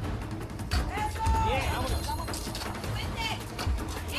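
Team members shouting encouragement, with one long drawn-out call about a second in and shorter calls after it, over background music with a low pulsing beat.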